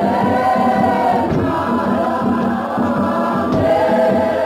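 A choir singing, several voices holding long notes.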